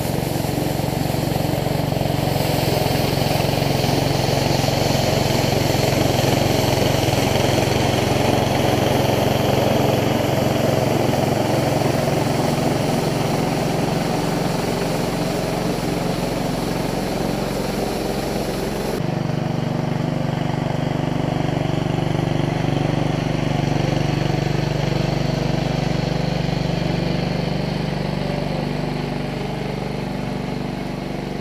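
Honda 5.5 hp single-cylinder engine of a 48-inch Sweepster walk-behind sweeper running steadily on a test run after a drive-belt replacement. A hiss rides over the engine note until about two-thirds of the way through, when it cuts out suddenly and the engine note shifts.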